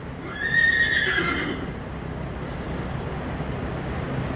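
A horse whinnying once: a high, wavering call lasting just over a second near the start.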